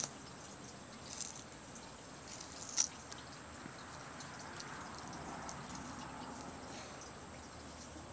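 Sulcata tortoise biting and chewing spaghetti squash: faint, scattered crunching clicks, the sharpest about three seconds in.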